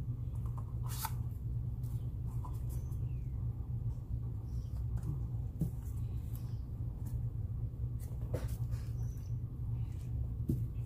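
Steady low background hum with a few light clicks and taps, the sound of small cups and painting supplies being handled.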